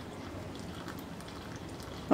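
A thin stream of water pouring into a glass bowl of flour: a faint, steady trickle.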